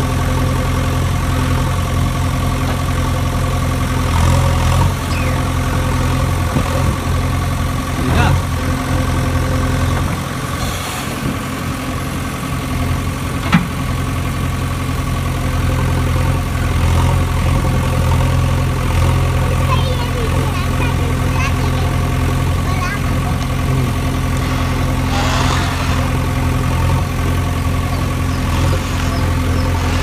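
An engine idling steadily, with a low, even hum, and a few sharp clicks about eight and thirteen seconds in.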